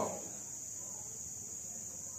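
A steady high-pitched drone runs unbroken under a quiet room. A man's last word dies away in the hall's echo at the very start.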